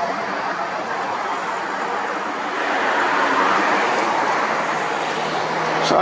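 Road traffic noise: a car passing, its tyre and engine noise swelling about halfway through and then easing off.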